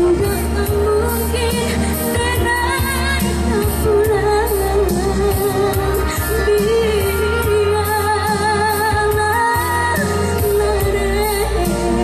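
A woman singing a Minang song into a microphone, her held notes wavering with vibrato, over amplified backing music with a steady bass and beat.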